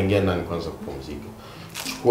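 Speech only: a low-pitched voice talking briefly, with a short pause in the middle.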